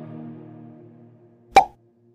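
The song's last held chord fades away, and about one and a half seconds in a single short pop sounds: the click effect of a Like/Subscribe button animation.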